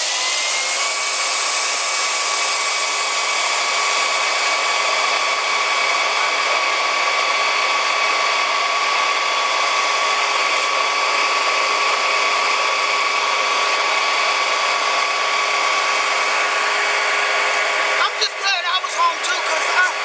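A steady mechanical whine over a hiss, like a motor running at constant speed. It starts abruptly, its pitch rises slightly over the first second, and then it holds even until voices come in near the end.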